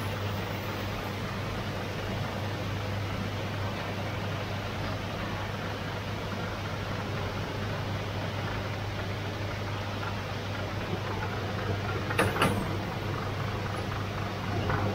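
Motor-driven lens grinding machine running steadily, a constant electric hum under the even noise of the water-fed flat grinding wheel spinning. A brief sharp knock comes near the end.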